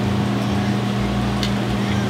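Steady machine hum of restaurant kitchen equipment, with one faint click about one and a half seconds in.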